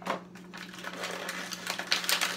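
Clear plastic toy packaging handled in the hands: a sharp click right at the start, then light scattered clicks and crinkles.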